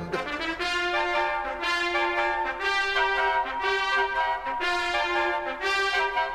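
Latin American dance orchestra's brass section playing held chords that shift every second or so, with no drums or bass underneath.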